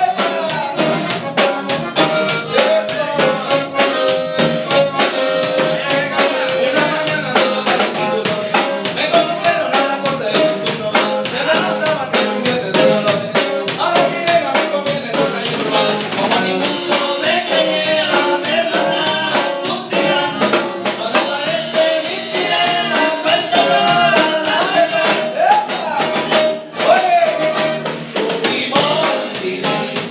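A band plays a song with a steady drum-kit beat, electric bass and twelve-string guitar, while a man sings the lead into a microphone.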